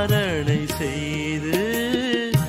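Indian devotional background music: an ornamented melody that slides and wavers in pitch, gliding down early on, over low drum strokes.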